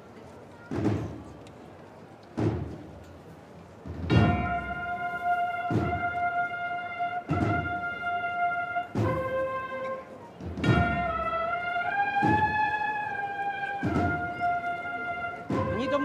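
Holy Week procession band: a bass drum beats slowly and evenly, about once every second and a half, and about four seconds in a brass melody joins it and carries on over the drum.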